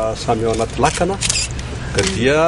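A man speaking in a steady, measured voice, with a few short sharp clicks about midway.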